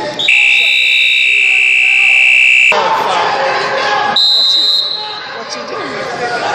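Arena timer buzzer sounding one steady, loud tone for about two and a half seconds and cutting off sharply, which stops the wrestling for the end of a period. About four seconds in, a shorter, higher steady tone follows.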